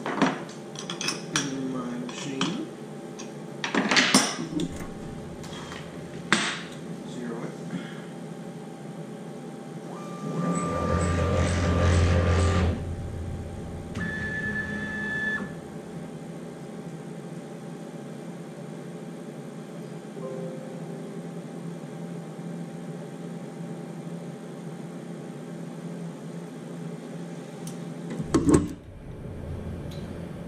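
Steel wrenches clinking and knocking against the CNC router's spindle while a sixteenth-inch bit is changed, a run of sharp metallic clicks. About ten seconds in, a machine motor whirs with a steady whine for about two seconds, followed by a shorter, higher whine, over a steady machine hum.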